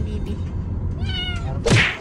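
A young kitten meowing once, a short cry that falls slightly in pitch, about a second in, over the low steady rumble of a car's interior. A brief burst of noise follows near the end.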